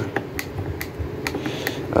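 Screwdriver turning a screw out of a wooden case panel: a run of small, sharp clicks at an uneven pace, about six in two seconds.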